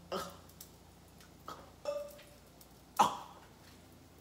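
A few brief mouth and throat noises from a person licking a metal spatula, with one sharp, much louder burst about three seconds in.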